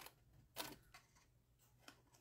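Two faint snips of small scissors cutting through cardstock, a little over a second apart, trimming a notch out of a score line; otherwise near silence.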